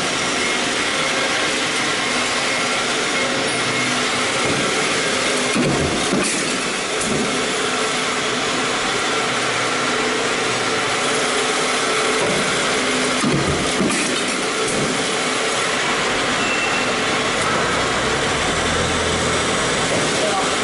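Stamping press running steadily with a progressive deep-drawing die fitted, with a few short knocks as it works.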